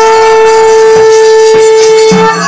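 A conch shell (shankha) blown in one long, steady, loud note, as is done at the food offering to the deity in a Bengali puja.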